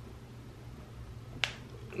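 A single sharp click about one and a half seconds in, over a faint low room hum.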